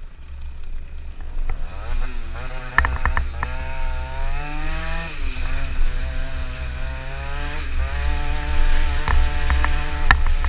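Two-stroke scooter engine revving hard under way. Its pitch climbs about a second and a half in, holds, dips briefly midway and climbs again near the end. Wind buffets the helmet-mounted microphone throughout, with a few sharp knocks and rattles.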